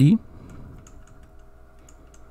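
Faint light taps of a stylus writing on a digital drawing surface, over a low steady electrical hum, with the last syllable of a spoken word at the very start.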